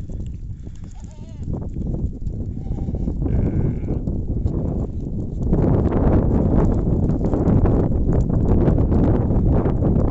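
Goats bleating twice: a wavering call about a second in and a higher, shorter one a little before the middle. From just past halfway, a louder rough rushing noise takes over.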